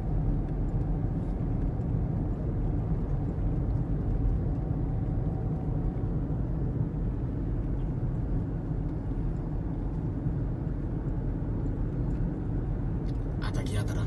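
Steady low rumble of road and engine noise inside a car's cabin while driving, with a faint steady whine over it that fades about halfway through.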